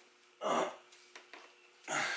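A man's short breathy exhale about half a second in, then near quiet with a few faint ticks over a faint steady hum.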